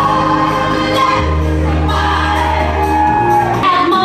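Music with a singing voice over held bass notes, which change about a second in and again around three seconds in.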